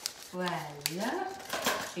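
A few light clicks and knocks with some rustling as a nylon piping bag is fitted over the rim of a plastic piping-bag stand: one sharp click a little under a second in, more near the end.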